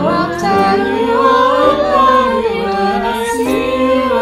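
A cappella choir of men's and women's voices singing in harmony, no instruments, with a higher melody line moving up and down over held lower parts.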